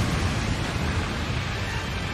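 Rough, stormy sea: a steady rushing noise of waves and wind with a deep rumble underneath, easing slightly toward the end.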